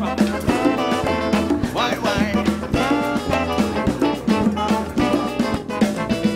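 Brass-band music at a steady beat: a trombone playing over a band of saxophone, guitar, sousaphone bass, percussion and drum kit, with some gliding notes.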